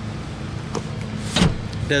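Rear split seatback of a 2015 Buick LaCrosse being raised, with a faint knock and then one sharp click about one and a half seconds in as it latches upright, over a steady low hum.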